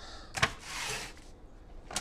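A sheet of paper rustling briefly as it is handled and laid down on a kitchen counter, with a light tap about half a second in and another just before the end.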